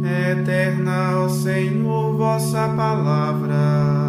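A solo voice chanting a Portuguese psalm verse over a held accompaniment chord, in the style of a sung Liturgy of the Hours.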